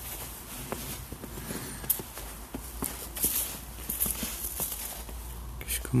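Footsteps on snow, a person walking at an even pace with short irregular crunches of packed snow underfoot.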